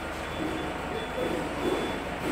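A minibus's reversing alarm sounds a faint high beep that repeats at a regular pace, over the steady low rumble of the bus engine idling.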